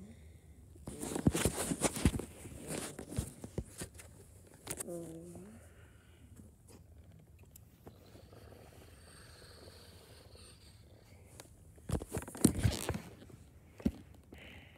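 Handling noise of Lego pieces and a hand-held camera: clusters of clicks, knocks and rustles about a second in and again near the end, with a brief low voiced hum around five seconds in and a faint quiet stretch between.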